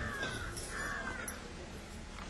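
Faint bird calls over low background noise: a few thin, short falling calls in the first second or so.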